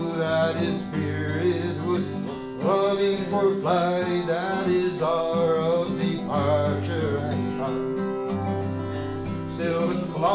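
Acoustic guitar playing a folk-song accompaniment while a man sings, his voice holding long wavering notes through the middle stretch.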